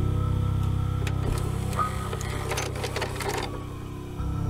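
A dark ambient music drone with a steady low hum. From about a second in to about three and a half seconds, a run of mechanical clicks and clatter sits over it: a VCR loading a VHS cassette.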